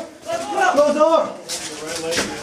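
A man's voice speaking or calling out, words unclear, with a few short knocks near the end.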